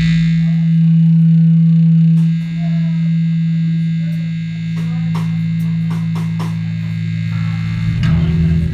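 An amplified electric chord is struck once and left ringing as a steady, loud drone. Faint crowd chatter and a few clicks sit underneath.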